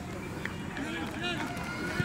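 Voices of players and coaches calling out and chatting across an outdoor football training pitch, over steady open-air background noise.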